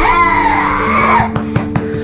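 A baby's long, strained, breathy gasp for air lasting about a second, followed by a few faint clicks, over acoustic guitar music. It is one of the repeated gasps that the parents take for choking on milk.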